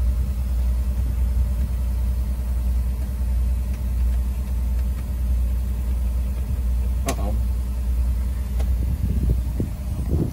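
Detroit Diesel two-stroke bus engine idling steadily, with a low, even drone.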